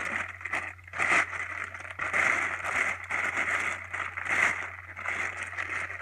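Thin plastic wrapping of a large multi-roll pack of kitchen paper crinkling and rustling as it is handled, in irregular surges.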